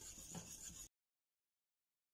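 Faint scraping of a wire whisk stirring egg-yolk cream in a stainless steel saucepan, cutting off to dead silence a little under a second in.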